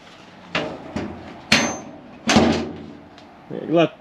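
Steel car door being shut and latched, a convertible door hung on a relocated door post to check its fit: a few metal knocks and clunks. The loudest comes about a second and a half in with a brief ring, and a heavier thud follows.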